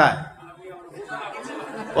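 Speech only: a man's voice through a microphone ends a phrase at the start, then quieter voices murmur from about a second in.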